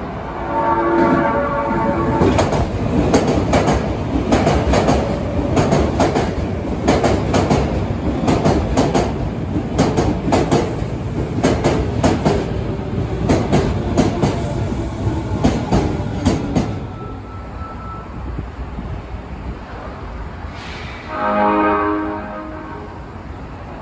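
Osaka Metro Midosuji Line 21 series subway train sounding its horn briefly as it approaches. It then runs past with a long run of rhythmic wheel clacks over the rail joints, which die away about three-quarters of the way through. Another brief pitched tone comes near the end.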